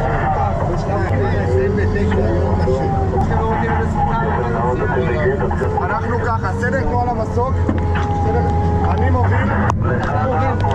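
Voices talking over a steady low engine drone, with a few short clicks near the end.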